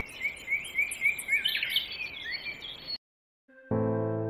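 Forest birds calling, a run of short quick chirps, about four a second, over faint high-pitched calls. The sound cuts off abruptly about three seconds in, and a sustained guitar tone begins just before the end.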